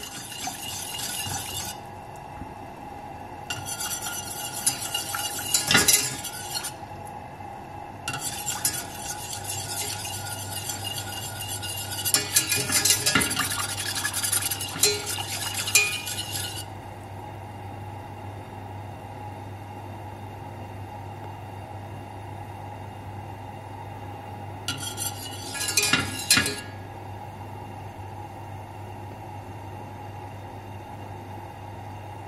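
Wire whisk beating a cornstarch-and-water glue mixture in a stainless steel saucepan over a gas flame: four spells of fast scraping and clinking against the pan, the longest in the middle and a short one near the end. A steady low hum runs underneath.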